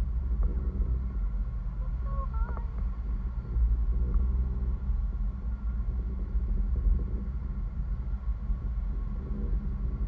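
Wind rumbling steadily on the microphone of a camera carried aloft on a parasail rig.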